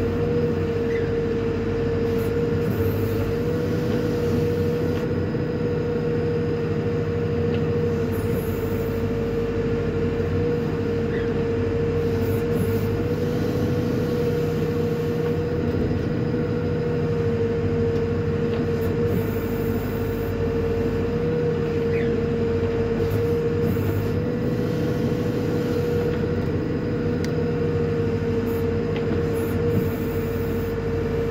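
Hidromek HMK 102S backhoe loader's diesel engine running steadily under digging load, heard from inside the cab, with a constant high whine over the low engine rumble as the backhoe arm digs.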